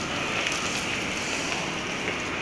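Steady background noise of a large indoor space, an even hiss with no distinct events.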